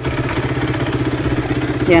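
Honda Sonic 125 motorcycle engine idling steadily with a fast, even pulse. It now holds idle on a replacement 28 mm carburettor, after being starved of fuel.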